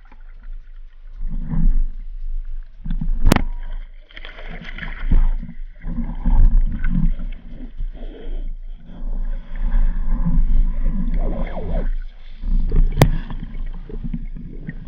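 Muffled underwater noise of a camera being moved through reeds and weed: irregular swells of low swishing and rumbling water sound. Two sharp clicks stand out, about three seconds in and again near the end.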